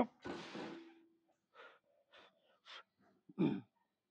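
A man breathing hard while working through a heavy leg-press set: a sharp intake of breath, then a long forceful exhale, several short breaths, and a louder voiced breath about three and a half seconds in.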